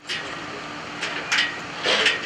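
Sugar factory machinery running: a steady mechanical noise with a low hum, and a couple of louder hisses in the second half.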